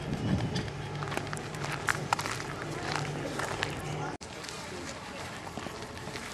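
Outdoor background sound with indistinct voices and scattered light clicks and taps, over a low steady hum that cuts off abruptly about four seconds in.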